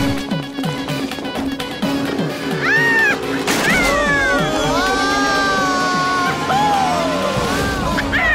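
Cartoon soundtrack: quick rhythmic music, then a crash about three and a half seconds in, followed by a long, wavering wail that slides down in pitch near the end.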